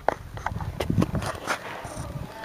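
A few irregular knocks and dull thuds.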